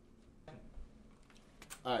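A few faint, quick clicks in the second half, then a man's voice begins near the end.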